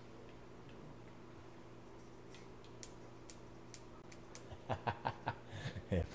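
Quiet room with a steady low hum, broken by faint scattered clicks and ticks, then a few short, louder soft bursts near the end.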